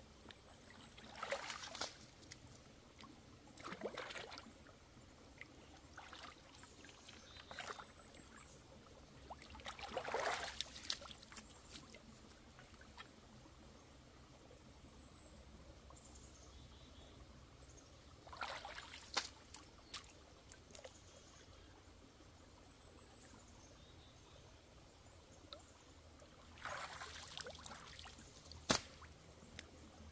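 Water splashing and sloshing in short bursts every few seconds as a rake and hands pull sticks and mud from a beaver-clogged culvert inlet in flood water, with one sharp knock near the end.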